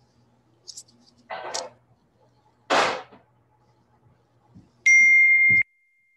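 A single electronic beep: one steady high tone lasting under a second, starting and stopping abruptly, about five seconds in. Before it come two short knocks about a second apart.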